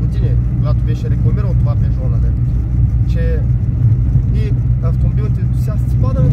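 Peugeot 106's 1.4-litre engine and road noise, heard from inside the cabin as it drives along at a steady pace: a constant low drone.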